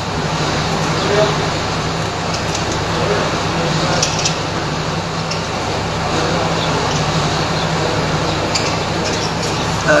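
Steady low background hum with traffic-like noise, a few faint voices in it and a couple of light metal clicks from hand tools and bolts.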